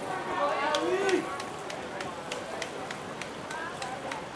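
Indistinct voices of people talking at a distance, with scattered faint sharp clicks.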